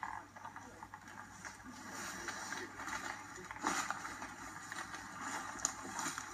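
Footsteps crunching through dry leaf litter and twigs while walking, an irregular run of crackles with a couple of sharper snaps midway and near the end.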